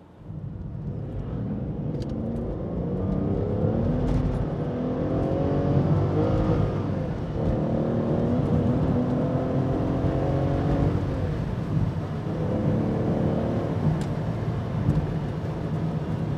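Aston Martin DB9's 5.9-litre V12 accelerating hard through a six-speed manual, heard from inside the cabin. The engine note climbs, breaks at a gear change about seven seconds in, climbs again, then eases to a steadier note after about eleven seconds.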